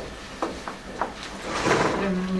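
A few light clicks, then a short rustling noise near the end.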